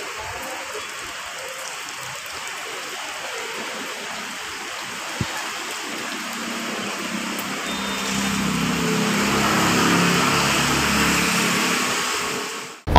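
Steady hiss of rain falling. In the second half a vehicle engine on the wet road grows louder and then fades slightly, with one short click a little before that.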